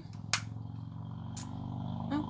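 Two short clicks about a second apart, from small plastic makeup compacts being handled, over a steady low hum.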